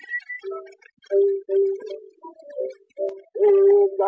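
Early 1890s phonograph recording: a high, clear whistled phrase ends just after the start, then short lower musical notes of the accompaniment follow. Near the end a louder held note leads into the next sung verse.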